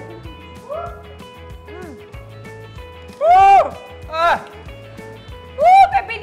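Background music with a steady beat. Over it, a woman gives three short, loud, high cries, each rising then falling in pitch, in reaction to the burning heat of chilli-filled meatballs.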